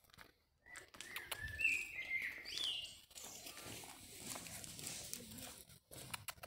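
Small bird chirping: a few short, high calls in the first half, one of them sliding upward, with a soft steady background noise after them.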